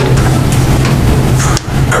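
Room tone through the meeting-room microphones: a steady low hum with hiss.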